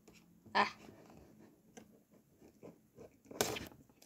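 Quiet handling of a cardboard figure box with scissors: faint scattered small clicks, then a short louder scrape a little before the end.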